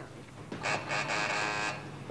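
A harsh, steady buzz lasting about a second, starting about half a second in.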